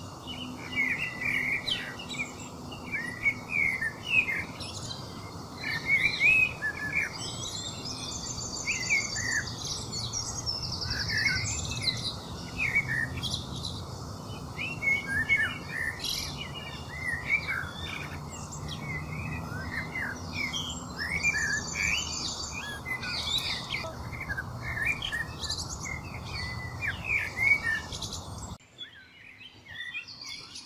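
Several small birds chirping and singing continuously, with many short rising and falling calls, over a steady low background hiss. A rapid high trill comes in twice, about 8 seconds and 21 seconds in. Near the end the sound cuts off abruptly.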